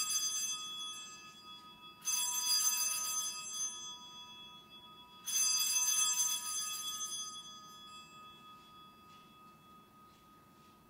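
Altar bells rung three times at the elevation of the consecrated host: a bright ringing of several high tones that fades, struck again about two seconds in and about five seconds in, each ring dying away over a few seconds.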